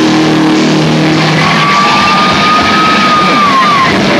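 Doom metal band playing live: heavily distorted electric guitars sustain a dense, noisy drone. From about a second and a half in, a single high guitar tone is held, sliding down just before the end.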